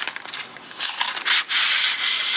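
A plastic watercolour palette being slid out of its cardboard box: a few small clicks and scuffs, then a louder steady scraping rub in the second half.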